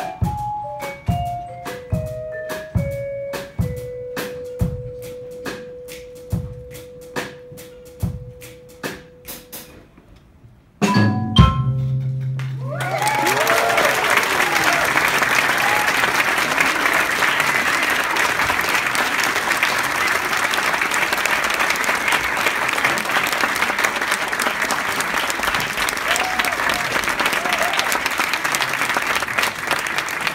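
Mallet percussion ensemble of marimba, vibraphone and xylophone with double bass finishing a piece: sparse struck notes and one held note fading away, a brief hush, then a final low accented hit about eleven seconds in. Audience applause with a few whoops follows and continues.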